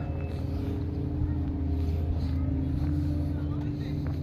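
Steady low hum of an idling engine, with faint voices in the background.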